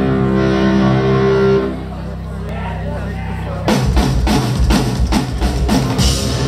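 Live rock band on stage: a held chord rings out and thins, then the drums and full band come in with a driving beat a little before four seconds in.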